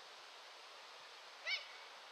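One short, high-pitched shout from a player on the pitch about one and a half seconds in, over a faint steady outdoor hiss.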